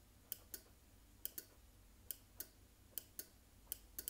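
A small switch wired to a Shelly 1's SW input being toggled on and off five times, faint sharp clicks in five pairs, the two clicks of each pair about a quarter second apart. It is the five-toggle sequence that resets the Shelly 1.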